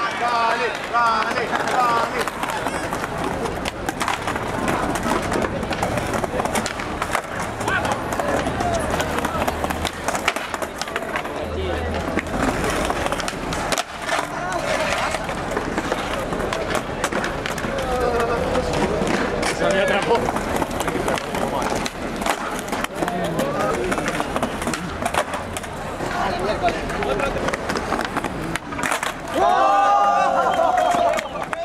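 Skateboards on tiled pavement: wheels rolling, tails popping and boards landing and clattering during flatground tricks, as a series of sharp clacks all through, with onlookers talking and shouting over them.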